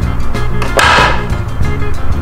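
Background music playing steadily, with a brief burst of hiss-like noise about a second in.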